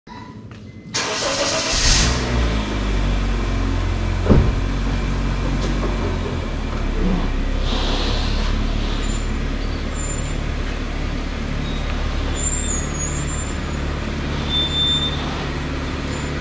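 Honda Mobilio RS 1.5-litre four-cylinder engine starting about a second in, then running at a steady low idle as the car is driven slowly. A single sharp click at about four seconds.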